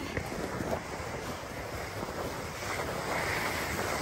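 A sled sliding down a packed-snow hill, a steady rushing scrape over the snow, with wind buffeting the microphone; it grows louder near the end as the sled picks up speed.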